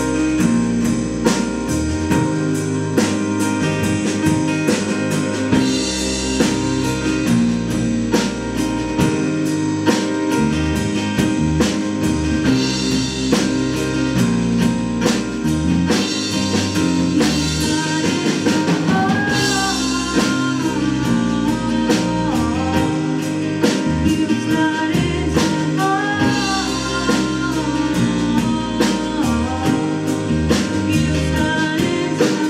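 Live band playing a slow song on grand piano, electric bass and drum kit, with a steady beat of drum and cymbal strikes.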